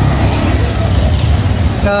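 Steady low rumble and hiss of city street traffic, loud and close.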